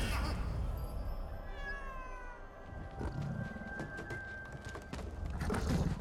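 Cat-like yowls of the Matagots, the film's hairless cat creatures: a few cries falling in pitch about a second and a half in, over a low rumble, with a knock near three seconds and another near the end.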